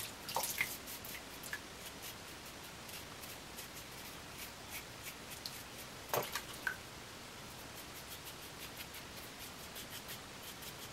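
Vintage Gillette safety razor scraping through lathered stubble on a third pass across the grain: a faint run of short crackly strokes. Louder clicks come about half a second in and again about six seconds in.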